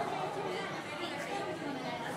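Indistinct background chatter: several people talking at once, no words clear, steady throughout.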